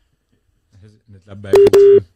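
Telephone busy tone on a phone line: a loud steady beep starting about one and a half seconds in, broken by clicks. The call to a remote guest has failed to go through.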